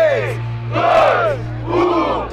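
A crowd of battle spectators shouting together in loud yells, three shouts in quick succession, right after a countdown to start the round.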